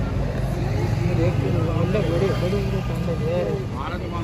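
Steady low rumble, as of traffic or an engine running, under indistinct voices talking.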